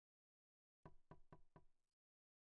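Four quick knocks in a row, about four a second, faint, the last one weaker.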